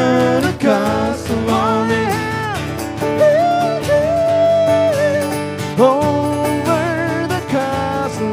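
Live acoustic music: two acoustic guitars strummed under a man singing long held notes with vibrato.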